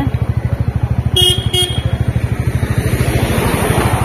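A road vehicle's engine running with a steady, rapid low pulse while on the move. Two short horn toots sound about a second in, and a rushing noise swells near the end.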